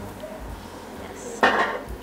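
Kitchenware clattering once, sharply, a little after halfway through, with a brief metallic ring.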